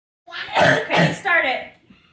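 A person coughing twice in quick succession, then a short voiced sound like a cough or throat-clearing tailing off.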